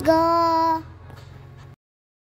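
A single sung note from a music track, held steady for under a second, then dropping to a much quieter tail and cutting to silence near the end.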